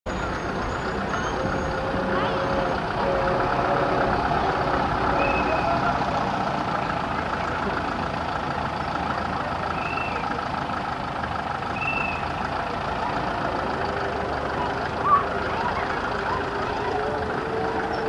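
Vintage Scammell Scarab three-wheeled tractor unit's engine running steadily as it drives along pulling a flatbed trailer, with voices in the background. One brief sharp knock about fifteen seconds in.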